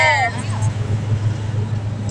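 Steady low hum and noise of a bus's engine and road running, heard from inside the passenger cabin, after a woman's voice trails off near the start.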